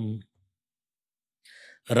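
A man's sustained, chant-like recitation of a Sanskrit verse breaks off a quarter second in, leaving near silence. A short breath in follows about a second and a half in, and the chanting starts again just before the end.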